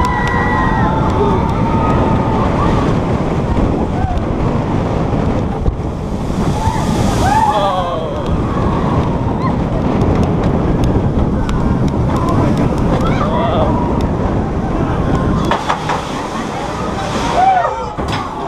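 Wind rushing over the microphone and the rumble of a steel flying roller coaster train running along its track, with riders yelling a few times. The noise eases off about three-quarters of the way through as the train slows onto the flat brake run.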